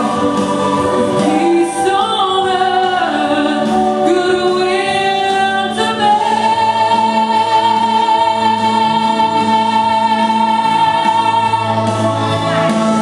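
Girls' voices singing a slow song over accompaniment, holding one long note through the second half.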